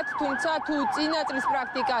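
Only speech: a woman talking steadily in Georgian.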